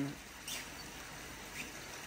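Steady splashing of small water spouts pouring from a stone wall into a pond, with a faint click about half a second in.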